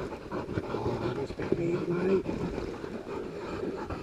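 Pig dogs panting as they hold a caught wild boar, with rustling and crackling of flax leaves and scrub. A short low moan about a second and a half in, lasting under a second.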